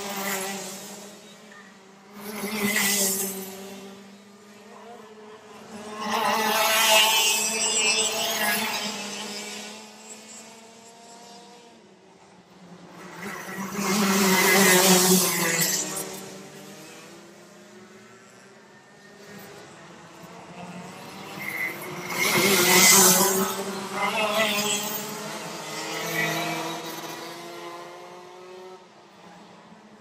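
Two-stroke racing kart engines running at high revs, their pitch rising and falling. The sound swells loud about six times in the half minute and drops back in between.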